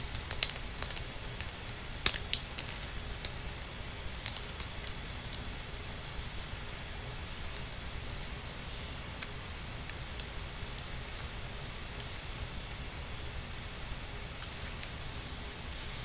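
Light, sharp clicks and taps of fingers and a small screwdriver handling the plastic and metal parts inside an opened netbook, coming thick in the first five seconds or so and only now and then after that, over a steady faint hiss.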